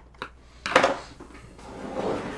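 Metal case of a rack-mount network switch being handled on a wooden tabletop: a couple of light clicks, then a loud metallic clunk a little under a second in, followed by a scraping slide.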